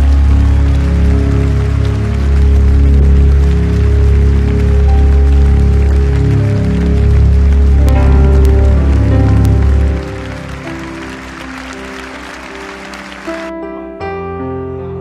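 Live worship music: a full band with heavy bass and many held notes. About ten seconds in the band drops away, leaving softer sustained keyboard chords.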